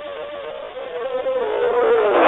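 A buzzing electronic tone with a strong, reedy edge that wavers and slides slowly down in pitch as it grows louder.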